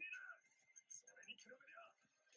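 Near silence with faint voices: subtitled anime dialogue playing quietly in the background.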